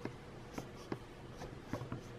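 Faint, irregular scratchy clicks and rubbing from a handheld camera being moved close against fabric, about five clicks in two seconds, over a low steady hum.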